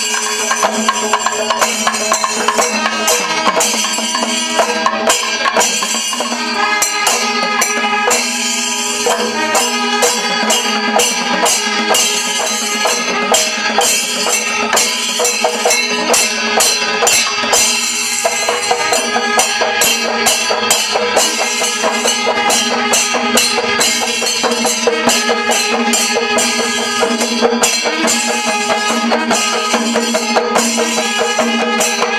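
Temple percussion ensemble in Kerala style: barrel drums beaten in a fast, dense rhythm with hand cymbals clashing, over steady sustained tones that fit the curved kombu horns being blown.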